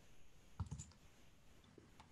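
A few faint, short clicks over near-silent room tone: a quick cluster just over half a second in and a single one near the end.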